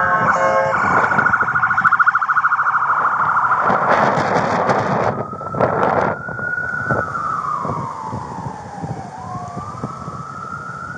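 Emergency vehicle siren sounding a fast yelp for the first few seconds, then switching to a slow wail that rises, falls gradually and begins to rise again near the end.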